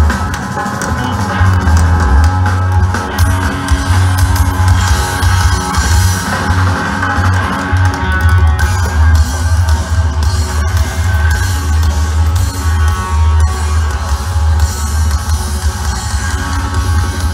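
A live band playing loud amplified music, with a drum kit, a heavy pulsing bass and guitar.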